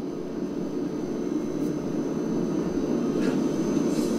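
Steady low rumbling drone from a TV drama's soundtrack, slowly getting louder, with a faint high whine above it.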